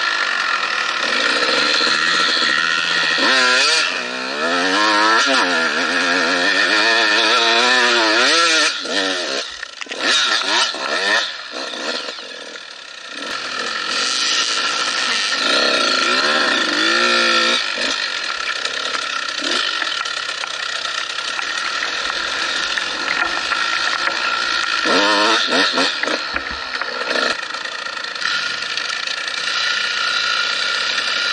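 Motocross dirt bike engine heard from the bike as it is ridden off-road, the revs rising and falling over and over with throttle and gear changes. The throttle eases off for a moment about twelve seconds in, then the engine picks up again.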